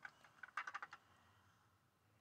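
A quick run of about eight light clicks and taps in the first second as the die-cast model car is handled in the hands.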